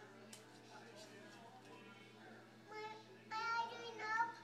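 A toddler's high-pitched, sing-song voice: a short call near the end, then a longer held one. Before it, faint ticks of a pen scribbling on paper on a glass table over a low steady hum.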